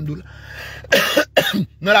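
A man coughs between spoken phrases: a sharp cough about a second in and a smaller one just after.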